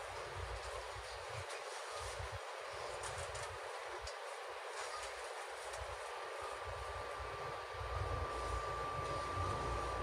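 Cabin ambience of a Sapporo streetcar A1100-series 'Sirius' low-floor tram standing still: a steady hum with a low rumble from the car's equipment. A steady high-pitched whine comes in about six seconds in.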